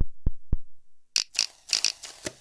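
Algorithmically generated TidalCycles pattern played through SuperCollider: a regular electronic pulse of short thuds, about four a second, stops about half a second in. After a brief gap, a harsh, crackly, glitchy burst of sample-based sound starts about a second in as a new generated line takes over.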